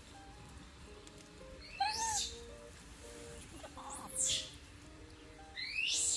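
Three short, high-pitched squealing calls, each sweeping sharply in pitch, come about two, four and six seconds in, over quiet background music.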